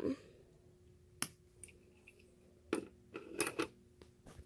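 Small plastic toy grooming box and its tiny pieces being handled: one sharp click about a second in, then a few soft knocks and rustles near the end.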